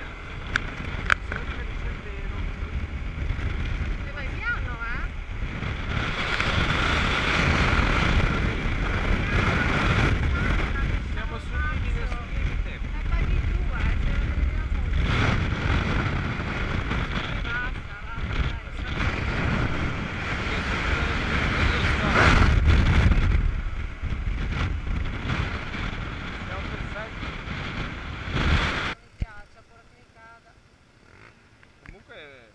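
Wind buffeting the microphone over the engine and road noise of a Honda SH300 single-cylinder scooter riding along, rising and falling with speed. The noise drops away sharply near the end as the scooter slows to a stop.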